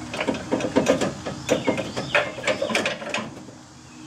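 Metal and plastic rattling and clunking as the bar across the top of a 2015 Chevy Silverado's radiator support is tugged and wiggled. It has been unbolted but is still caught on something. There is an uneven run of clicks and knocks for about three seconds, dying down near the end.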